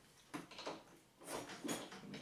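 Faint clicks and scuffs from a Yamaha YZ250F's kickstart lever being eased down to find compression and let ratchet back up, before the full kick.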